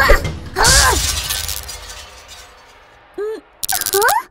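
Cartoon crash sound effect of something shattering, sudden about a second in, then fading away over the next two seconds, with a short vocal cry at the moment of the crash.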